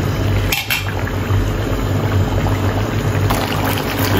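Thick mutton curry bubbling as it simmers in a pan over a gas burner, with a steady low hum underneath and a brief clatter about half a second in.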